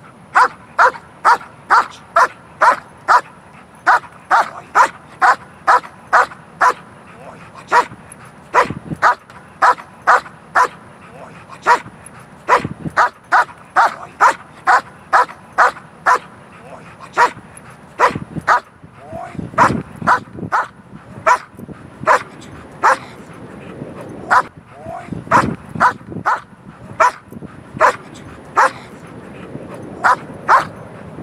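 Black German Shepherd barking repeatedly, about two sharp barks a second with a few short pauses.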